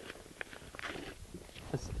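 Faint rustling and a few light crackles and clicks of a damp paper mailing envelope being handled.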